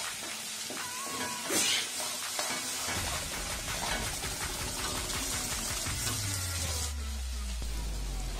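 Metal ladle stirring and scraping a thick masala in a metal kadhai, with many small scraping clicks over the sizzle of the frying food.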